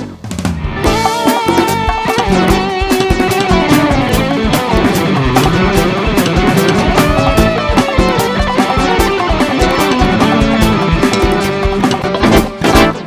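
Live band music from drum kit, keyboards, electric guitar and bass guitar, with a melody that slides up and down over a steady drum beat. The band drops out for an instant at the very start, then comes straight back in.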